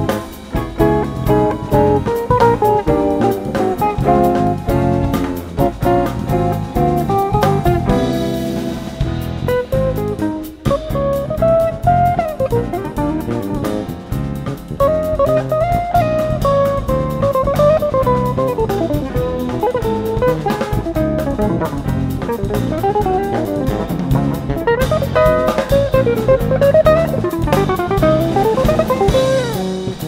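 Live jazz band: a hollow-body electric guitar plays a winding lead melody over a drum kit and bass.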